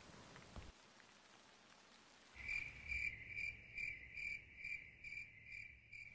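Near silence for the first couple of seconds, then a cricket chirping in short, evenly spaced pulses, about two to three chirps a second, over a faint low rumble.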